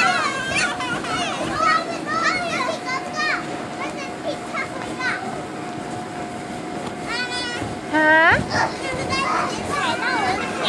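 Young children playing and shrieking with high, excited cries and calls, with a loud rising squeal about eight seconds in. A steady thin tone runs underneath.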